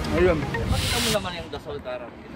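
A voice speaking a few words, then a short hiss lasting about half a second.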